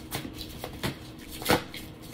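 Oracle card deck being shuffled in the hands: a string of light card clicks, the loudest about one and a half seconds in.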